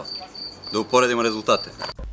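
A cricket chirping steadily, a short high-pitched pulse about five times a second, cut off suddenly at the end. A man's voice comes in briefly in the middle.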